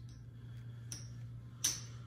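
Clay casino chips handled at a craps table, giving a faint click about a second in and a sharper, short clack near the end, over a low steady hum.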